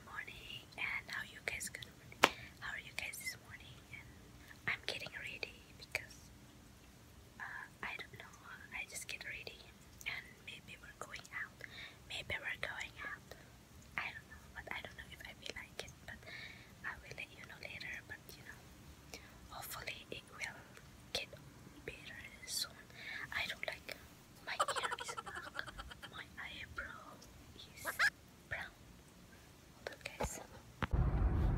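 A woman whispering, soft breathy speech in short phrases with brief pauses. A single sharp click about two seconds in.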